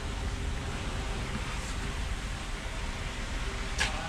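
Steady background hiss and low rumble with no distinct event, and one short click just before the end.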